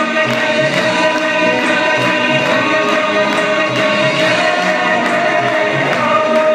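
Devotional group singing of a hymn over held keyboard notes, with a steady beat of light percussion strikes, about three a second.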